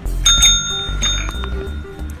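A cat's paw pressing the plunger of a desk service bell, giving one bright ring about a quarter second in that rings out and fades over about a second.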